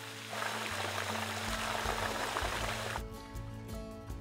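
Water gushing from a large tanker-fed hose onto a plastic rink liner, a steady rush that cuts off abruptly about three seconds in, under background music.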